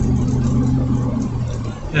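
Steady low hum of a vehicle's engine and road noise, heard from inside the cabin while driving; the hum fades out near the end.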